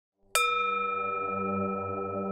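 A singing bowl struck once with a wooden stick about a third of a second in, then ringing on with several clear high tones over a low wavering hum.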